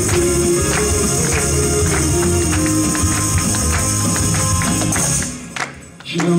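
Tambourines jingling and struck in a steady rhythm along with a recorded Latin worship song. Near the end the music briefly drops away almost to quiet, then comes back in.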